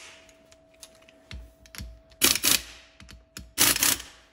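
Handheld pneumatic air tool run in two short bursts, about a second and a half apart, on the engine's 8 mm crankcase bolts, nipping them to check they are tight. A few light clicks of the socket being fitted come before.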